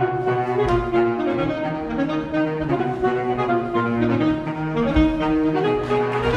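A saxophone ensemble playing live, including a baritone saxophone, in a quick passage of many changing notes over a low line.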